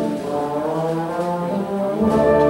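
School wind band playing. A quieter, thinner passage with one low note held briefly sits between loud held chords from the full band.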